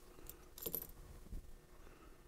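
A few faint, light metallic clicks and a brief clink from small fly-tying tools being handled at the vise.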